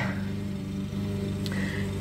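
A steady low hum with several evenly spaced overtones, and a faint click about one and a half seconds in.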